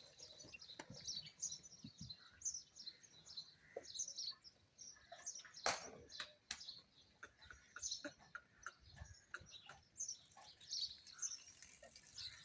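Small birds chirping faintly and repeatedly, short high calls one after another, with scattered sharp clicks and a single louder knock about halfway through.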